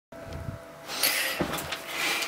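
Handling noise from a camera being set in place: a low rumble, a rustle about a second in, then a knock.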